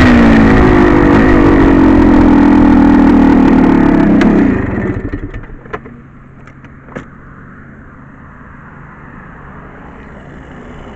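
Two-stroke dirt bike engine coasting down from speed and running steadily, then shut off about four and a half seconds in. A few sharp clicks and knocks follow, then only a low steady background remains.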